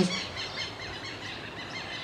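Pause in a man's speech, filled with steady background noise and faint bird chirps.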